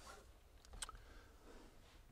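Near silence: room tone, with a couple of faint clicks a little under a second in.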